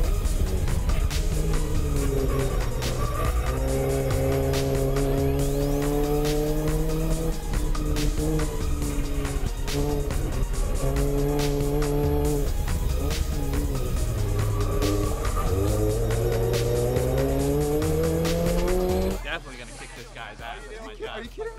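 Scion tC race car's four-cylinder engine at full throttle, heard from inside the cabin. Its pitch climbs through each gear and drops at the shifts, several times over. Music plays underneath, and the engine sound cuts off shortly before the end.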